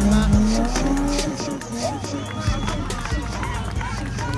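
BMW 325iS 'Gusheshe' engine held at high revs during a spinning display, rising slightly, then dropping about a second in to a lower steady run as the car comes out of the spin. Onlookers shout over it.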